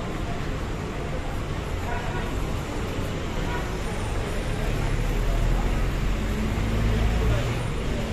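Street traffic with a minibus engine running close by, its low rumble swelling about halfway through as the bus passes, with people's voices around.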